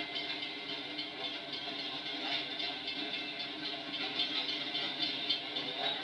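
A train passing through an active railroad grade crossing, a steady, even noise with no breaks, heard through the hiss of a worn, many-times-dubbed tape.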